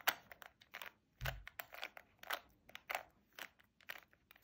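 Plastic 3x3 Rubik's cube having its layers turned by hand again and again through the right-hand move sequence: a quick, uneven series of short clicks and clacks as each face snaps round, with one duller thump about a second in.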